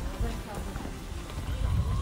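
Footsteps on cobblestones, with the voices of people around.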